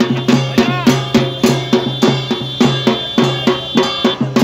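Rhythmic drumming at an even pace of about three and a half beats a second, with a high held tone over the second half.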